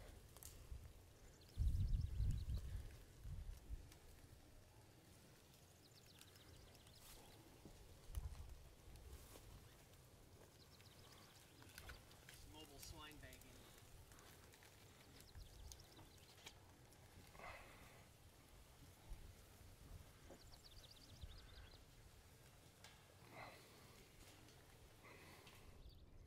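Quiet pasture with a few faint, short livestock grunts and calls scattered through, and a couple of low rumbles near the start.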